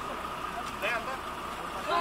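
Indistinct voices of people at a roadside accident scene over the steady hum of an idling vehicle engine.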